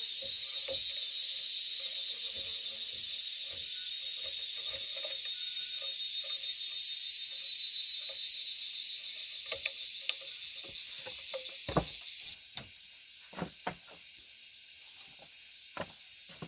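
A dense, steady, high-pitched chorus of insects buzzing, with scattered light knocks and clicks of bamboo being handled. About three quarters of the way through, the chorus suddenly drops in level and the knocks stand out more.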